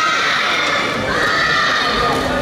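A group of young male voices shouting in unison in long, drawn-out calls over a hall crowd; one call ends just after the start and another begins about a second in and is held.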